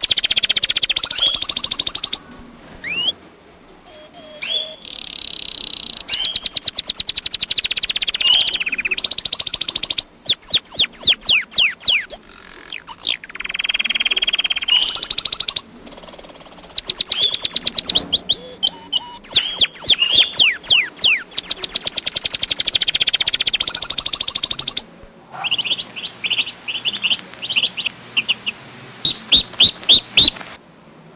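Domestic canary singing: long rolling phrases of rapid high trills and sweeping notes, broken by a few short pauses. Near the end the song turns to more evenly spaced chirps.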